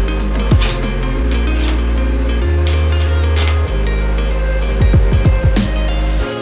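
Background music with deep sustained bass notes and a drum beat.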